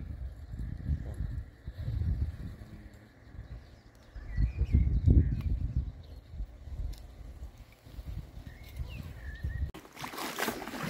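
Wind buffeting the microphone in uneven low gusts, strongest about halfway through.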